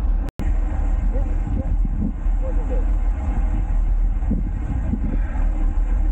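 Wind rumbling over a bike-mounted camera's microphone while riding a road bike, with tyre and road noise underneath. The sound cuts out for an instant about a third of a second in.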